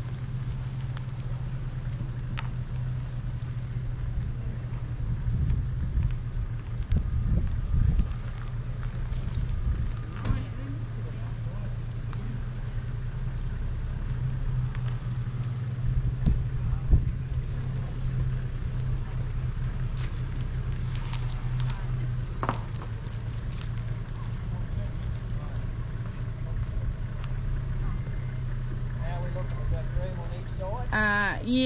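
Vehicle engine running at low, even revs as a ute manoeuvres a camper trailer, a steady low hum with a few light knocks.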